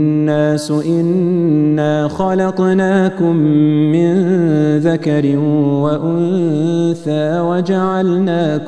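A man's voice reciting a verse of the Quran in Arabic in a melodic chant, holding long ornamented notes with short pauses for breath.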